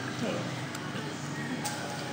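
Quiet room background with faint music and low voices, and a single light click a little before the end.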